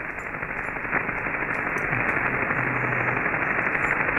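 Receiver hiss from a Yaesu FT-847 on single-sideband (USB) at 27.560 MHz, the 11-metre band, with no voice on the channel. The hiss is dull, with no high end, and grows slowly louder.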